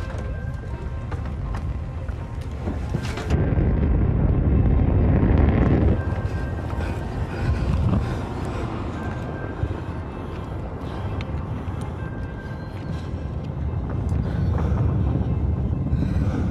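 Background music over a deep, steady rumble from a Falcon 9 rocket climbing after launch, heard from the ground. The rumble swells strongly about three seconds in and rises again near the end.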